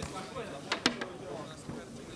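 Cornermen's voices shouting around a ground-grappling MMA fight, with two sharp smacks close together a little under a second in.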